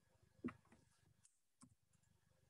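Two isolated computer keyboard clicks as a letter is typed, a sharper one about half a second in and a fainter one at about a second and a half, otherwise near silence.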